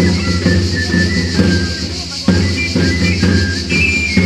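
Provençal tambourinaires playing a dance tune on galoubets (three-hole pipes) and tambourins (long tabor drums): a high, thin pipe melody over steady drum beats.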